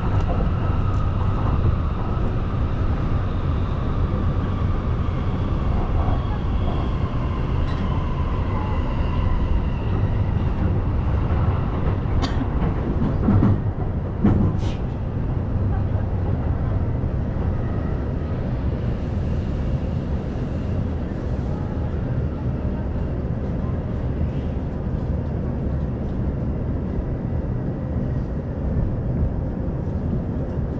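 Electric commuter train heard from inside the car, slowing for a station stop: a steady rumble of wheels on rail under a motor whine that falls in pitch over the first ten seconds. A few sharp clicks come near the middle.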